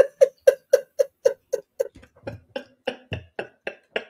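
Hearty laughter: a long run of short, evenly spaced 'ha' pulses, about four a second, slowing and fading toward the end.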